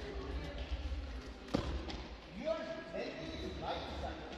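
A single sharp thump about one and a half seconds in, over men's voices talking in a large, echoing hall.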